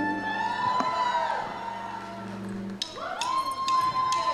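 Live band music in a soft passage of a song: sustained chords under a held melody note that glides up and holds. The low drone drops out a little under three seconds in, and short high percussion ticks come in near the end.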